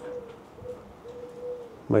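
A bird cooing in a few low, even notes, the longest lasting about half a second.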